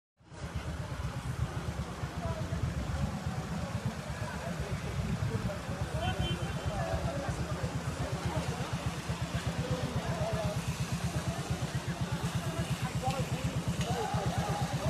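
A motor running steadily with a low, even throb of several beats a second, and faint voices under it.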